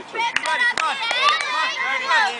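Several overlapping high-pitched voices of girl softball players calling and chattering across the field, with a few sharp clicks in the first second.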